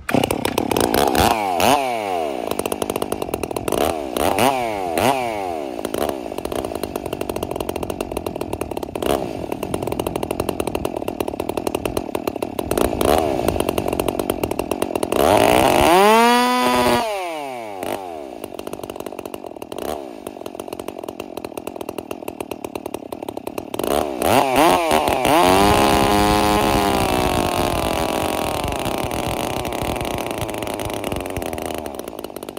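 Holzfforma G366 two-stroke chainsaw, with a swapped carburetor and opened-up muffler, running and being revved: a few quick blips early on, a big rev that rises and falls about halfway, and another rev near the end held high with its pitch and level slowly sagging. It is being run rich to see whether the carburetor can richen it to the point of shutting off.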